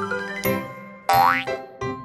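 Children's cartoon music, made of steady pitched notes, with a cartoon sound effect: one quick rising glide about a second in.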